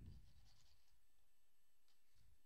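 Near silence, with a faint scrape of a tarot card being slid across a tabletop and one faint tick near the end.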